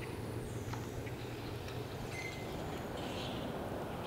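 Faint outdoor ambience: a low steady rumble with a few faint, brief bird chirps.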